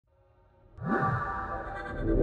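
Electronic intro music sting: faint held tones, then a loud entry about three quarters of a second in, with swooping pitch glides over sustained notes.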